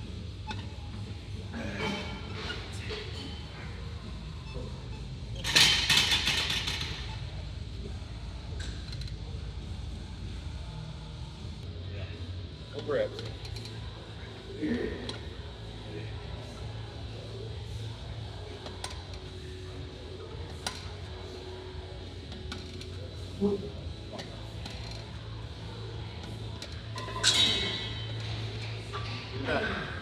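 Background music with a steady low hum, broken twice by a loud metallic clanking and rattling of a gym machine's weight-stack plates, about six seconds in and again near the end. A man's short shout of encouragement comes in the middle.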